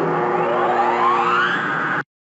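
Intro sting sound effect: a held chord of steady tones with a tone sweeping steadily upward over it, cutting off suddenly at the end.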